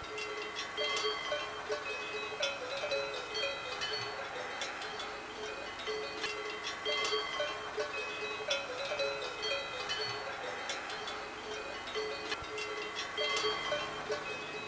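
Several cowbells clanking irregularly. Each strike rings on at its own pitch.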